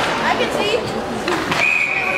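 Hockey referee's whistle blowing one steady blast that starts near the end, over crowd voices in the rink.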